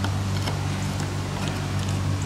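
A steady engine-like drone in the background, with a few faint clicks of a screwdriver working the Phillips screws of a metal access panel.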